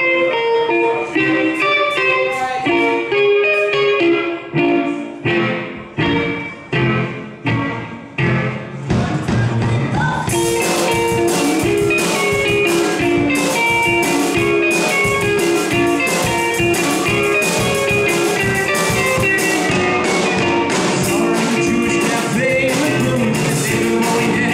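Live rock band instrumental. An electric guitar through a Marshall amp plays a riff alone, then hits chords that ring and fade between strokes. About ten seconds in the drum kit comes in with cymbals, and guitar and drums play on together.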